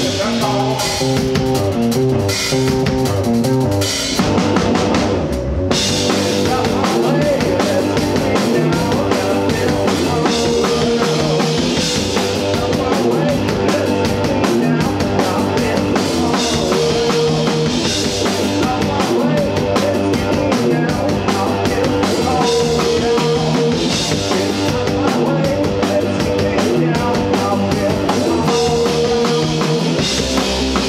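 Live rock band playing loudly: electric guitars over a drum kit keeping a steady beat.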